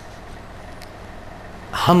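A pause in a man's speech, filled only by a steady low background hum and faint hiss; his voice comes back near the end.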